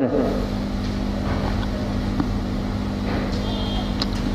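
A steady low mechanical hum with some noise, like an engine idling, holding level without change.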